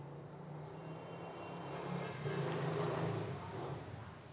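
A motor vehicle's engine running in the background, growing louder about halfway through and then fading, as if passing by.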